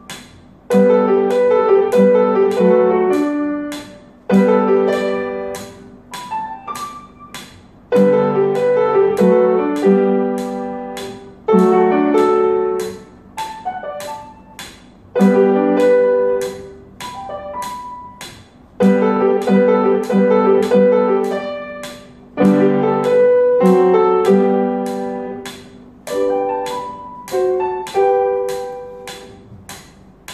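Upright piano played solo, a short piece in phrases that each start with loud chords and die away into softer, higher notes. The playing fades out near the end.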